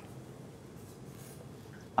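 A quiet lull: faint room tone with a steady low hum and a light hiss, no distinct event.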